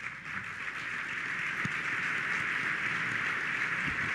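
Large audience applauding, a dense steady clatter of many hands that builds over the first second and then holds.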